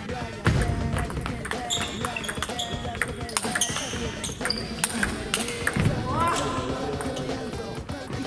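Table tennis rally: the ball clicks off the paddles and the table many times in quick succession, with a heavy thump about half a second in and short shoe squeaks on the wooden hall floor.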